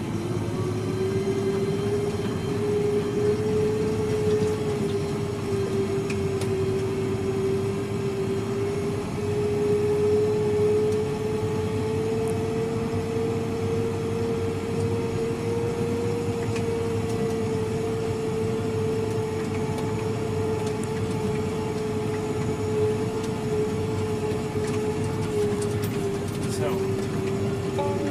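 Fendt tractor driving across a field, heard from inside the cab: a steady low rumble with a whine that drifts slightly up and down in pitch.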